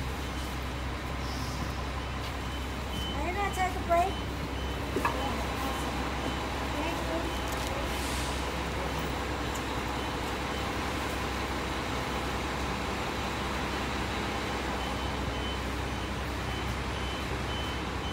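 Cummins ISM diesel engine of a 2000 Neoplan AN440A city bus idling with a steady low rumble, heard from close by while the bus stands at a stop. A rapid, high-pitched warning beep pulses over it during the first half and then fades.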